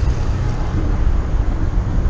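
Wind rushing over the microphone of a camera riding on a moving road bike: a steady low rumble with faint road and traffic noise under it.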